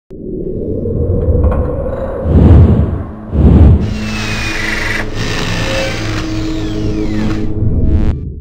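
Logo-intro sting music: a low rumbling drone with two loud deep hits, about two and a half and three and a half seconds in, then a bright shimmering swell with a slowly falling whistle-like glide.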